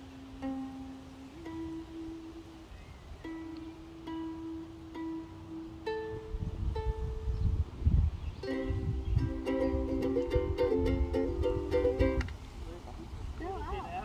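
Ukulele with its four strings plucked one at a time, each note ringing about a second, as a tuning check. Then strummed chords, several strums a second, for about three and a half seconds, stopping about two seconds before the end.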